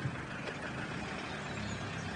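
A steady low background hum under light outdoor noise, with no speech, in a pause between lines of dialogue.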